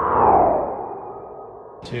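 An edited-in sound effect: an echoing, sonar-like tone that swells to a peak about a third of a second in, then falls in pitch as it fades.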